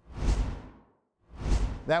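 Two swooshes of a TV news transition sound effect, each with a deep rumble underneath. The first fades away within the first second, and the second swells up about a second later.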